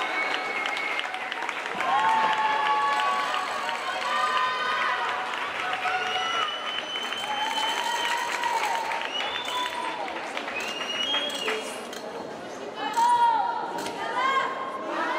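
Spectators in a sports hall calling out, cheering and clapping, with many overlapping high-pitched shouts and some drawn-out calls. The calls are loudest about a second before the end.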